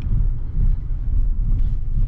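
Low, steady road and engine rumble inside a moving car as it rolls across a railroad grade crossing.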